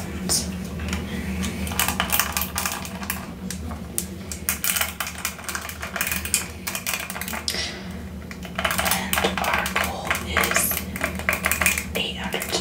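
Long fingernails tapping and scratching on a plastic cushion hairbrush and flicking its bristles, a fast, irregular run of small clicks.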